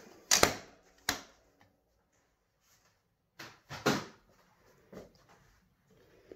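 Hard clacks and knocks from handling a plastic stamping platform and laying a card panel on a craft mat: two sharp clacks in the first second, a cluster of knocks a little after three seconds in, and a lighter tap at five seconds.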